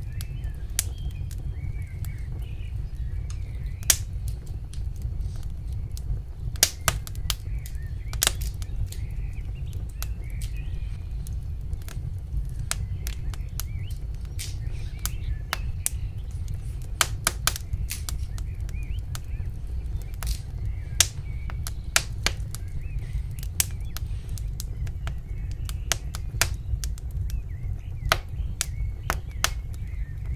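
Irregular sharp clicks and taps of wooden skewers and hands against a bamboo cutting board as raw chicken and pepper pieces are pushed onto the skewers, over a steady low hum.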